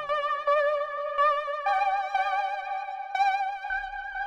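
The 'Dissonant Guitar' preset on a Massive software synthesizer playing high, sustained notes with a wavering vibrato. The notes change about two seconds in.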